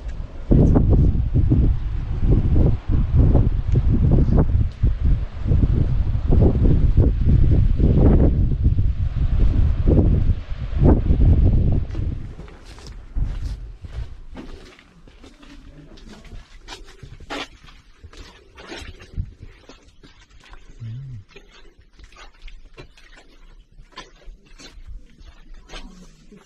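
Wind buffeting the camera microphone in loud, uneven gusts for about twelve seconds. It then drops away to a much quieter indoor stretch with scattered faint clicks and taps.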